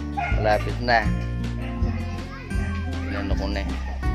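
Background music: a song with a steady bass line that changes note every second or so and a voice singing over it.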